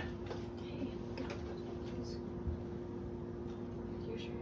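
A steady low hum with a few faint small knocks and rustles, the clearest about two and a half seconds in.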